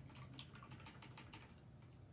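Faint, quick run of about ten light clicks or taps, stopping after about a second and a half.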